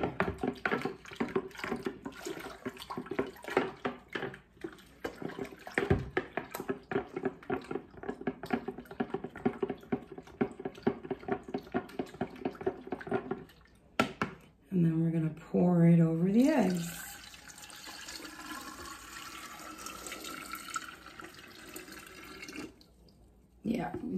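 Wooden spoon stirring pickling lime into water in a plastic pitcher: rapid, even tapping and scraping for about the first half. Later comes a steady rush of water lasting several seconds, which stops shortly before the end.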